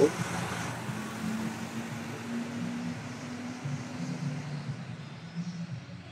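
Low, steady hum of car engines as a van drives past close by, with a held low drone for a few seconds in the middle.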